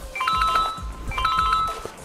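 Mobile phone ringtone: a short electronic melody of stepped tones, played twice, signalling an incoming call.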